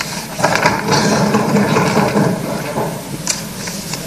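Legislators applauding by thumping their desks, a dense, rapid patter that starts just after the announcement and thins out near the end.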